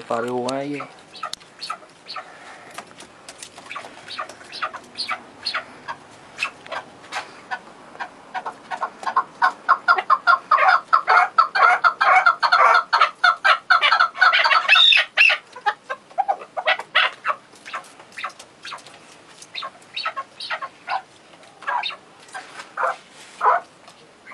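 Chukar partridges calling: a long series of short, rapid clucking notes that builds into a loud, fast, dense run in the middle, then thins out to scattered notes.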